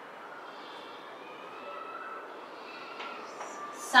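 Chalk scratching on a blackboard as figures are written, over a steady faint hiss.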